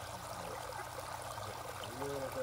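Koi pond water running steadily, a continuous trickling stream of falling water.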